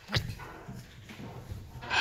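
Hyacinth macaw calling: one sudden sharp sound just after the start, then quieter low sounds as it works at the sofa throw with its beak.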